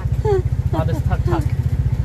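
Small motorcycle engine of a tuk tuk idling with a steady, fast low beat.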